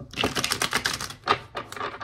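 A deck of tarot cards being shuffled by hand: a fast run of card clicks, a single sharper snap a little after a second, then another quick run of clicks near the end.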